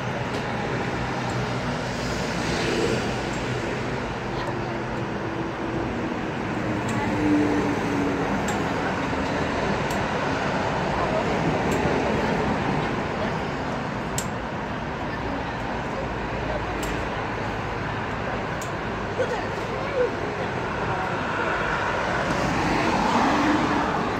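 Steady road traffic at a roadside bus stop, with a city bus's engine running close by in the first several seconds. Its note slides lower about five to eight seconds in.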